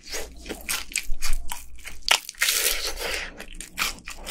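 Close-miked crunching and chewing of crispy fried chicken coating: a quick run of sharp crunches, thickening into a dense burst of crunching a little past halfway.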